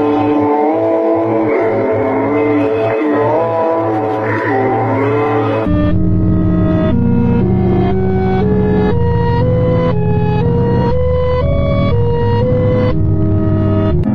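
Background music only: a sustained, droning passage with sliding tones, changing about six seconds in to a pulsing electronic track with a heavy bass and a stepping melody.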